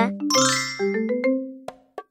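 A bright chime sound effect rings out about a third of a second in and fades away, over a light background melody of sustained notes. The music dies away just before the end.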